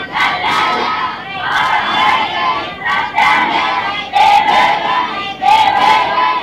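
A group of children chanting a prayer together in unison, in loud phrases with short breaks between them.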